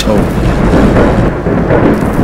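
Thunder sound effect: a loud, continuous rolling rumble.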